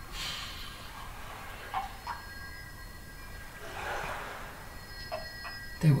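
A quiet pause in a spoken monologue: faint steady background hum, a soft breath that swells and fades about four seconds in, and a few small mouth clicks before speech resumes at the very end.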